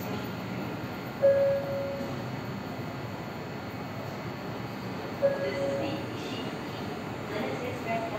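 A JR Shikoku limited-express train standing at the platform, with a steady hum from the train and station. A short beep sounds about a second in and again about four seconds later.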